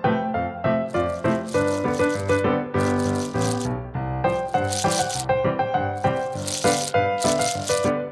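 Small candy-coated chocolate sweets rattling against each other as a hand digs through a pile of them, in five or so short bursts, over background music.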